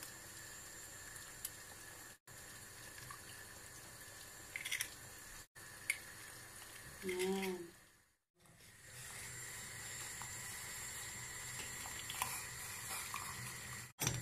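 Pot of water simmering on a gas hob with eggs poaching in it: a faint, steady watery hiss that cuts out abruptly a few times.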